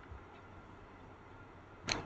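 Quiet room tone: faint steady hiss from the microphone, with a short faint click near the end.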